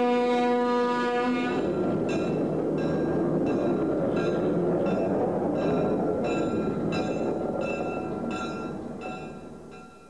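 Diesel switcher locomotive horn sounding one steady note that stops about a second and a half in. Then a bell rings about every 0.7 seconds over a steady noise, and everything fades out near the end.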